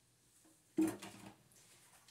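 A single short knock of something set down or handled on the kitchen counter, about a second in, dying away within half a second in a quiet room.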